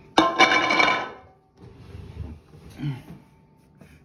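A fluted metal mold clanks against the pie dish or table as it is lifted off, ringing for about a second.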